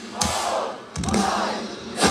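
A live metalcore band in a stop-start passage: two sudden full-band hits about a second apart, each dying away, with shouting and crowd noise over them before the full song comes back in.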